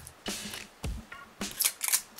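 Thin plastic protective film being peeled off a smartphone battery, crinkling in several short bursts.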